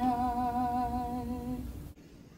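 A woman's voice holding one long final note with a steady vibrato, with the last chord of an acoustic guitar ringing under it; the note fades out just before the end.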